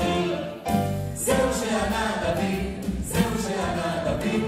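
A small mixed vocal group, women and a man, singing a Hebrew song together in harmony over instrumental backing, with a brief break in the voices about half a second in.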